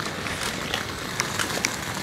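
Footsteps of a person walking, faint ticks about half a second apart, over a steady outdoor hiss.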